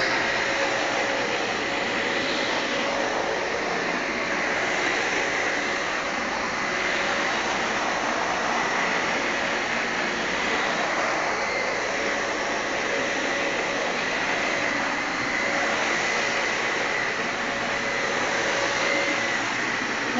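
Dyson Cinetic Big Ball canister vacuum running while it is pushed across carpet: a steady rush of air with a high whine held at one pitch.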